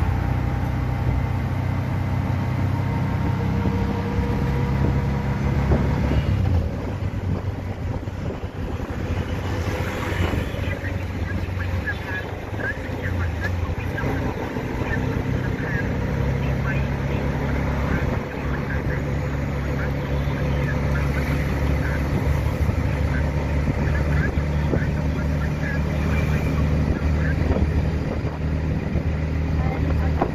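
Small engine of a three-wheeled auto rickshaw running under way, heard from the passenger seat with road and wind noise; its pitch shifts a few times as it slows and picks up speed.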